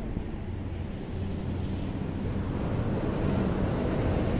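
Steady wind noise buffeting the microphone, mixed with the wash of surf from the sea.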